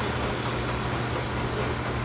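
Steady low hum and even whirring noise of laundromat machinery running, unchanging throughout.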